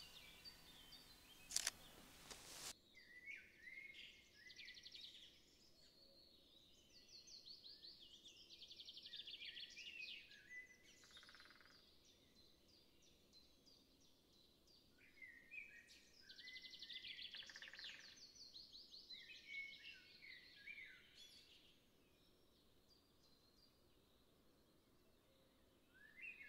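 Faint songbirds singing: high chirping phrases with rapid trills, in two spells with a lull between them. A brief rustle at the start.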